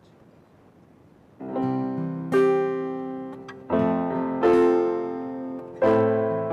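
Instrumental opening of a worship song: after a moment of faint hiss, electric-piano chords with strummed acoustic guitar begin about a second and a half in. Each chord is struck and left to ring down before the next, about one a second.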